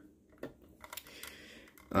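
A few light, scattered clicks and taps of handling noise over a faint hiss.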